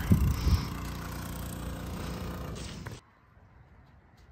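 A motor running steadily at a constant speed, under the last syllable of a man's voice. It cuts off abruptly about three seconds in, leaving near silence with a few faint clicks.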